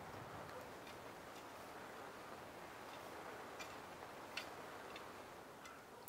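Very quiet background with a few soft, scattered ticks a second or more apart.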